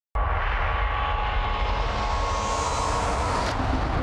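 News-intro sound design: a swelling, rising whoosh over a heavy low rumble that starts abruptly and cuts off about three and a half seconds in, where a beat with a repeated low note takes over.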